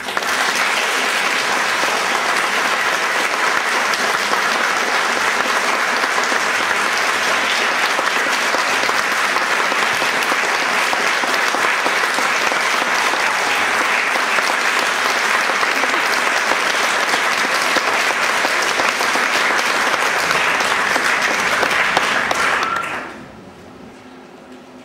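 Audience applauding steadily, starting all at once and dying away near the end.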